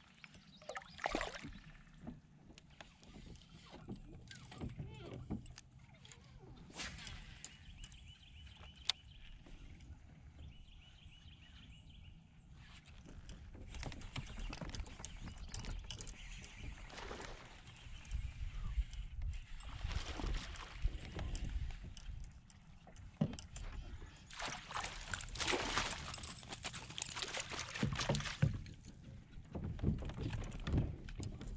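Water sloshing and splashing around a fishing kayak, loudest near the end as a hooked largemouth bass is played beside the kayak for netting.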